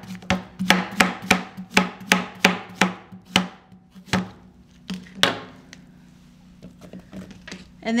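Kitchen knife slicing a zucchini into rounds on a thin plastic cutting mat: an even run of chops, about three a second, then two slower last strokes about four and five seconds in.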